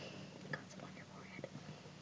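Quiet room with faint whispering and a few small, soft sounds.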